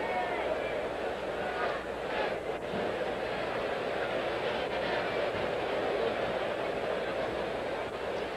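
Steady ballpark crowd noise with faint scattered voices: a large stadium crowd murmuring between pitches.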